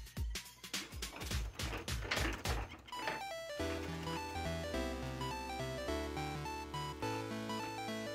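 Balls clattering down through the pins of a coin-operated pinball slot machine, a quick run of irregular clicks and knocks that stops about three and a half seconds in. Then a simple electronic video-game-style jingle plays in steady stepped notes with a repeating bass line.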